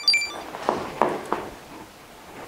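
A quick run of short, high electronic beeps, about four a second, ending just after the start, then three light knocks about a second in.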